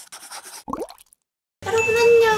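Logo-sting sound effect: faint soft rustles, then a quick rising bloop about two-thirds of a second in, a moment of silence, and a woman's voice beginning near the end.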